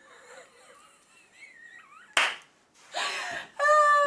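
A woman bursting into laughter: a single sharp slap about two seconds in, a breathy gasp, then a loud high-pitched held laugh near the end.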